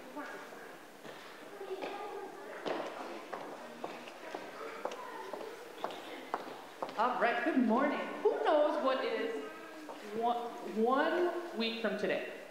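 Children's footsteps and light taps on a hard floor with faint murmuring as they settle, then from about seven seconds in, a voice speaking clearly and loudly.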